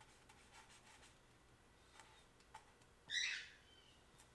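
Faint scratching and light taps of a paintbrush working oil paint, with a short high squeak about three seconds in.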